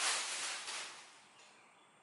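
A clear plastic packaging bag rustling and crinkling as it is pulled off a metal part. The sound dies away about a second and a half in.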